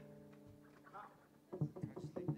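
The band's last held chord fades away. Quiet, brief voices on stage follow near the end.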